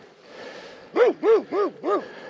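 A dog barking: a quick run of four short barks, about three a second, starting about a second in.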